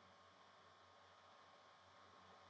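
Near silence: faint room tone with a low steady hum and hiss.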